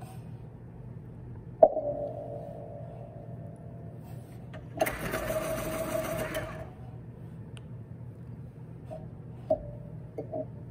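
Classroom noises over a steady low hum. A sharp knock with a short ringing squeal comes about one and a half seconds in, then about two seconds of a harsher grinding scrape near the middle, and a couple of small knocks near the end.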